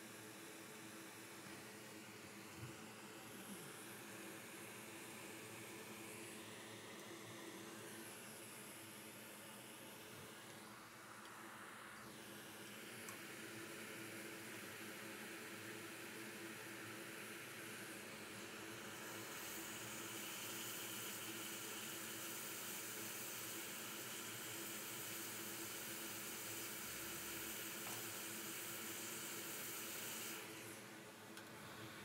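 Hot air rework station blowing on the board, a faint steady hiss that grows louder and brighter about two-thirds of the way in.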